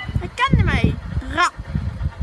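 Train approaching a level crossing, a low rumble throughout, with two loud, high-pitched wordless calls over it about half a second and a second and a half in.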